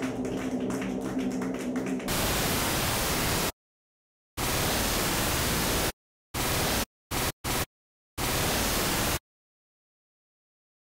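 Bursts of white-noise static that cut in and out abruptly, six bursts of uneven length with dead silence between them, the last stopping about a second before the end. For the first two seconds, before the static, a steady electronic noise drone with sustained low tones plays.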